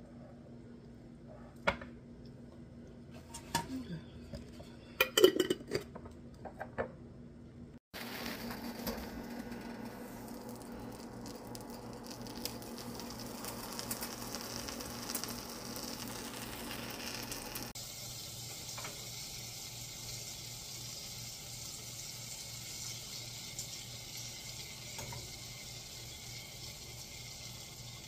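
A few knocks and clicks of a bowl and food being handled. Then, about 8 seconds in, a steady sizzle starts and keeps going with small crackles: a ham sandwich frying in hot fat in a frying pan.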